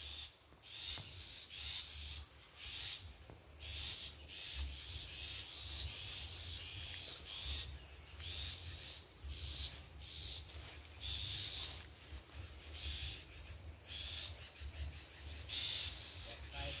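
Wild long-tailed shrike (cendet) calling over and over in short, fairly high notes, about one to two a second, with a low rumble underneath.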